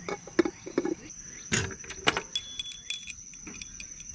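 Knocks and clicks of objects being handled and set down on a glass-topped table, one louder knock about a second and a half in, then a short bright metallic jingle. A steady high insect drone runs underneath.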